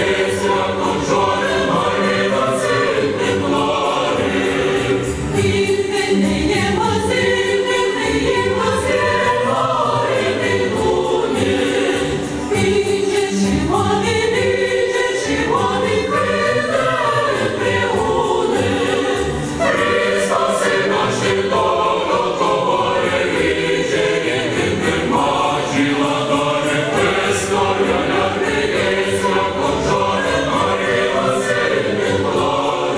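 Mixed choir of women's and men's voices singing a Christmas carol (koliadka), with brief breaks between phrases.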